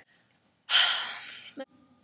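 A woman's loud, breathy sigh: one exhale of about a second that fades out, followed by a brief click.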